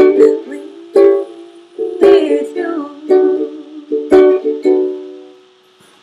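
Acoustic string instrument strumming the closing chords of a song, about one strum a second, with no singing. The last chord rings out and fades away a little past five seconds in.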